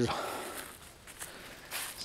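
Faint footsteps on leaf-littered ground: a few soft, short rustling steps against a quiet outdoor background.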